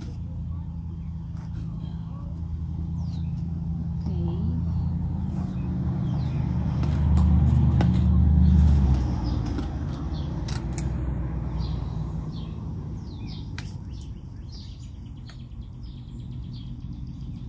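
A motor vehicle's engine hum that grows louder to a peak about eight seconds in and then fades away, as it passes by. Birds chirp briefly in the background.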